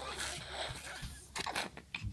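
NoseFrida manual nasal aspirator being sucked by mouth: an airy, hissing suction through its tube drawing saline-loosened mucus from a congested baby's nostril, with a few short clicks about one and a half seconds in.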